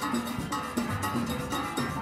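Steelband rhythm section playing: handheld cowbells struck with sticks in a fast, even beat over conga and drum-kit hits, with pitched notes from the band underneath.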